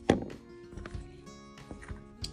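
Background music with steady held tones. A sharp knock comes just after the start, followed by a few lighter taps, as small plastic lens-assembly parts are handled on the laser's work surface.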